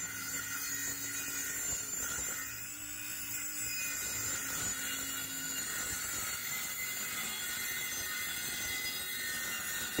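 Cordless DeWalt circular saw running steadily as it rips a long cut through a plywood sheet, with a constant motor whine.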